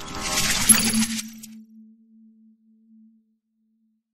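Intro logo sound effect: a bright, glittering burst of metallic chiming that lasts about a second and a half, with a low hum that comes in partway through and fades away over the next two seconds.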